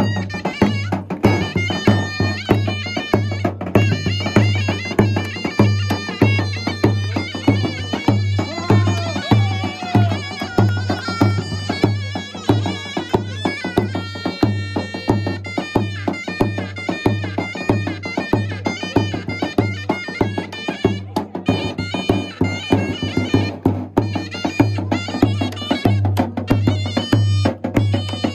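Live Kurdish/Turkish folk dance music: a davul bass drum beats a steady dance rhythm under a loud, shrill reed pipe playing the melody.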